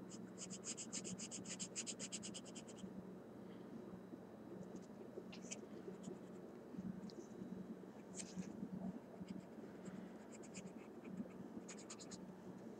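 Marker scribbling on paper while colouring in, faint: a quick run of rapid back-and-forth strokes in the first few seconds, then scattered single strokes.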